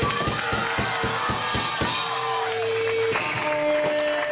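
Rock band's drum kit played in a quick run of hits for about two seconds, then held electric guitar notes, one changing to another about three seconds in, through a live PA.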